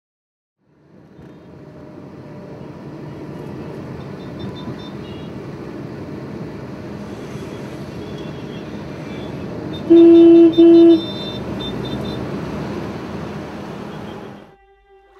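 Busy street traffic din fading in, with scattered faint horn toots. About ten seconds in, a vehicle horn gives two loud short blasts, the loudest sound.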